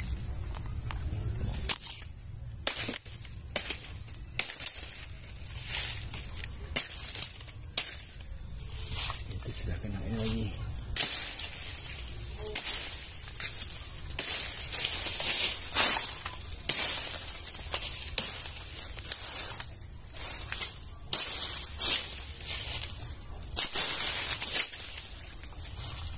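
Irregular sharp knocks and cracks, close and uneven in spacing, with a faint steady hiss behind them.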